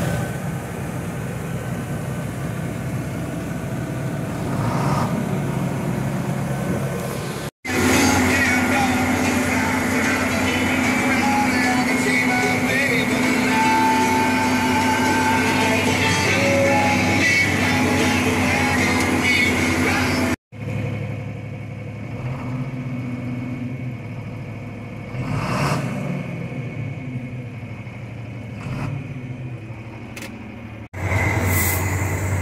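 Diesel tractor engine running steadily, heard from inside the cab over three clips joined by abrupt cuts, the middle one louder.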